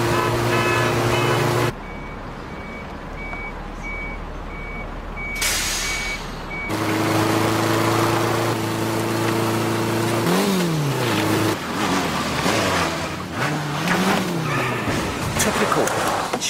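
Motor vehicle engines in a chase: a steady engine drone cuts off suddenly, and a quieter stretch with a faint repeated beep and a rising whoosh follows. The engine drone then returns, its pitch rising and falling as it revs, and ends in a clutter of knocks and rattles.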